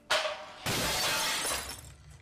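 Sound effect of glass shattering: a sudden crash, then about a second of loud hissing rush that fades away.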